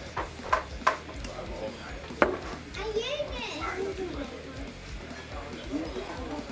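Fork and glassware clinking against plates on a diner table: three sharp clinks in the first second and a louder one about two seconds in, with voices and music in the background.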